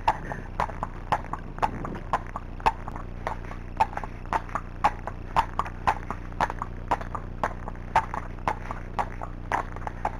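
A Friesian horse's hooves clip-clopping on a tarmac lane at a steady walk, in an even rhythm of about two loud strikes a second with softer ones between.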